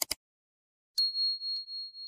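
A quick double mouse-click sound effect, then about a second in a single high notification-bell ding that rings on, fading with a slight pulse: the click-and-bell effect of an animated subscribe button.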